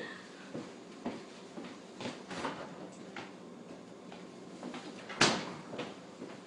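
Off-camera kitchen handling sounds: scattered light knocks and clatters of doors and objects, with one sharp bang a little after five seconds in.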